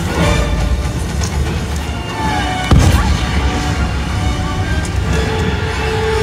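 One loud explosion about three seconds in, a pyrotechnic blast followed by a low rumble, over loud show music.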